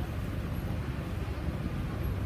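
Steady low rumble of city street background noise during a pause in speech.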